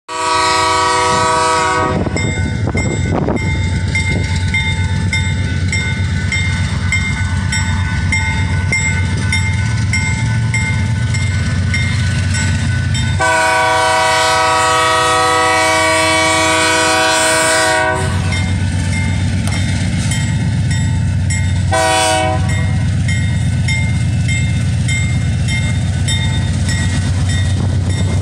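BNSF diesel locomotives pulling a loaded rock train away from a standstill and up a grade, with a steady deep engine rumble. The lead unit's multi-chime air horn sounds the crossing signal: a blast in the first two seconds, a long blast of about five seconds about halfway through, and a short blast about 22 seconds in.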